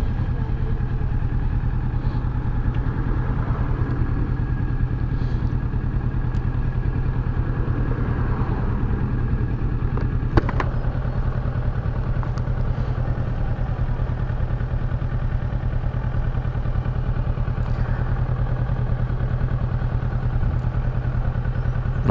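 Kawasaki Versys 650's parallel-twin engine running at low, steady revs, heard from the rider's seat. A single sharp click about ten seconds in.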